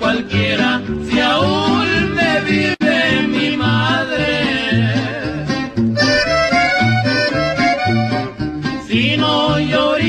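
Norteño music in an instrumental break between sung lines: an accordion melody over strummed guitar and a steady alternating bass.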